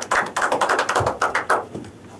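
A small audience clapping: quick, irregular claps that die away shortly before the end.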